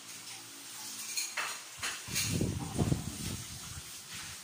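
Dishes and utensils clinking and clattering as they are washed by hand in a kitchen sink, with a few sharp clinks and a louder, lower stretch of clatter from about two seconds in.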